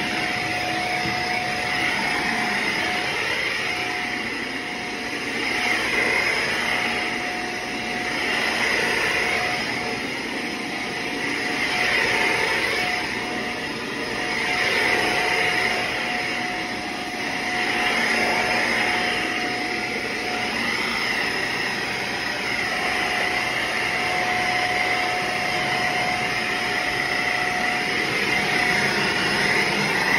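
Shark upright vacuum cleaner running on carpet, a steady motor whine with suction noise. It swells and eases about every three seconds as the cleaner is pushed back and forth over the pile.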